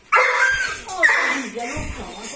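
Dog giving excited high-pitched whining cries in greeting: two cries about a second apart, the first starting suddenly.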